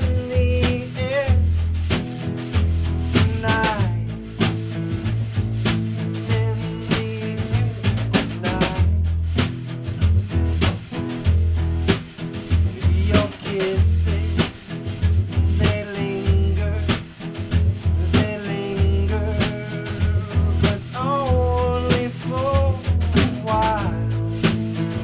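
Live acoustic band playing: strummed acoustic guitar and plucked upright double bass, with a man singing in phrases over them.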